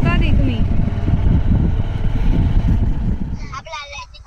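Wind buffeting the microphone and road rumble from a moving motorcycle, a dense low rush that drops away about three and a half seconds in. A voice is heard briefly at the start and again near the end.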